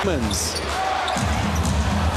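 Basketball arena crowd noise under a commentator's voice, with a basketball bouncing on the hardwood court from about a second in.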